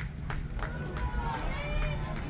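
Outdoor crowd sound of people's voices calling out, with one high drawn-out call near the end. Under it runs a steady low rumble, and a few sharp clicks come in the first second.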